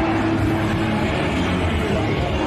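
Steady, loud din of a crowded street, with a heavy low rumble underneath.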